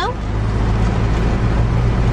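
Car engine idling, a steady low hum with an even rush of noise, heard from inside the cabin.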